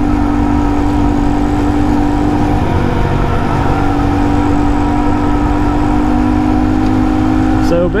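Honda Monkey 125's air-cooled single-cylinder engine running steadily at cruising speed, its drone wavering briefly about three seconds in, with wind rumble on the microphone.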